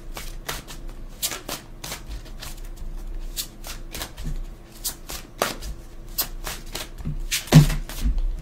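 A deck of oracle cards being shuffled by hand: a run of quick, irregular flicks and slaps, with one louder thump near the end.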